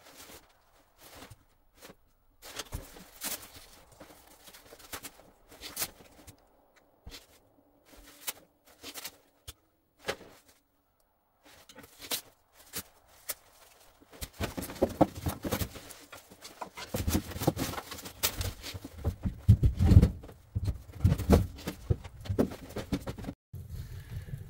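Wood and kindling being handled at a wood stove while a fire is lit: scattered knocks and clicks at first, growing into busier, louder clatter about fourteen seconds in.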